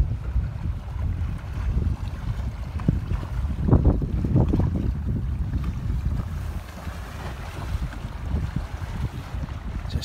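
Wind buffeting a phone's microphone, an uneven low rumble, with a few louder knocks a little before and after four seconds in.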